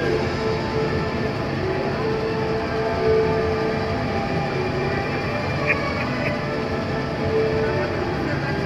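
Monorail train running steadily along its elevated track, a continuous running noise, with background music playing over it.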